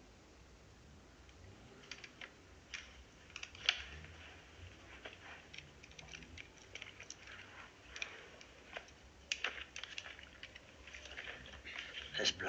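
Faint, irregular rustles and small clicks of handling movement in a hushed room, scattered from about two seconds in, over a low room hum.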